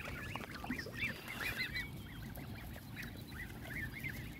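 Many Canada goose goslings peeping, with short high calls overlapping one another. The calls are busiest in the first two seconds and thin out after that.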